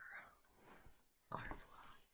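Faint whispering: a breathy, unvoiced stretch at the start and another short one about one and a half seconds in, with near quiet between.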